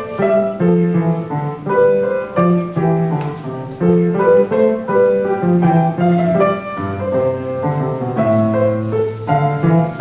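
An upright piano played solo, with low bass notes repeating steadily under a melody in the upper register.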